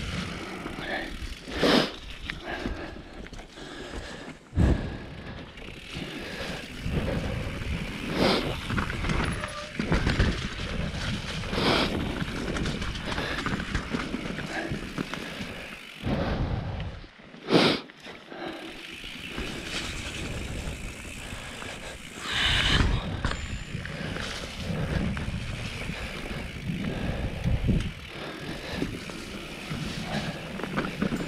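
A mountain bike rolling along dirt singletrack: a steady rumble of tyres on the trail with the bike rattling, and several sharp knocks from bumps, the loudest about four and a half and seventeen and a half seconds in.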